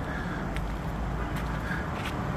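Steady outdoor street ambience: a low, even rumble with a couple of faint small clicks.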